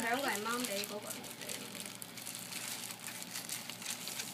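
A child says a short word at the start, then a clear plastic garment bag crinkles and rustles continuously as it is handled.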